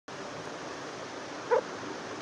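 Steady hiss of background noise, with one brief, sharp pitched sound about one and a half seconds in.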